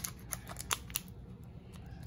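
A foil trading-card booster pack rustling and clicking as it is pulled out from the back of a cardboard booster box. There are a few light clicks in the first second, then quieter handling.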